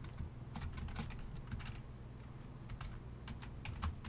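Typing on a computer keyboard: faint, irregular key clicks in short runs, with a quieter gap in the middle.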